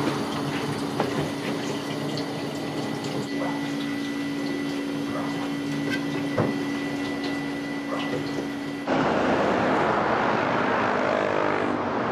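Tap water running into a kitchen sink, with a steady hum and a few sharp knife taps on a plastic cutting board as raw chicken is trimmed. About nine seconds in it cuts suddenly to louder, steady road traffic noise.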